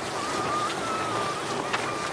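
Steady hiss of surf on the beach, with a faint thin wavering tone above it.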